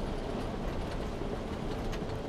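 Steady interior noise of a semi truck under way: engine hum and tyre noise on a wet road, heard from inside the cab.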